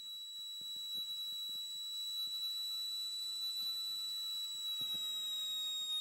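Steady high-pitched electronic whine on the light aircraft's radio/intercom audio feed, with little of the engine itself heard; the tone sags slightly lower in pitch near the end.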